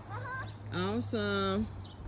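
A person's voice making two drawn-out wordless sounds, the first rising in pitch and the second held at a steady pitch.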